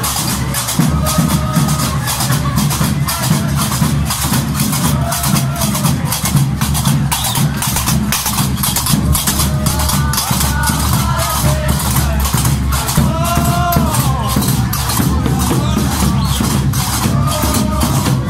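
Gnawa music: qraqeb, the iron double castanets, clacking in a fast steady rhythm over a low drum beat, with chanting voices that come in at intervals.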